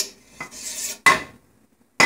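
A metal spoon knocking and scraping against a stainless steel cooking pot while fried rice is mixed: a click, a short scrape, then a loud sharp clank just after a second in.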